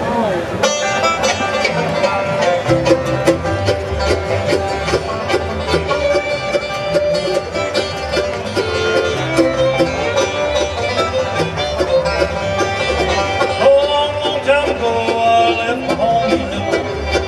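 Bluegrass band playing an instrumental passage with fiddle, upright bass, acoustic guitar, five-string banjo and Bulldog mandolin, the fast picked banjo notes to the fore. The full band comes in about half a second in.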